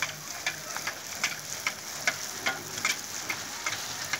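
Phuchka puri shells deep-frying in hot oil in a large iron wok, sizzling steadily with frequent sharp crackles, while a perforated iron ladle stirs and turns them.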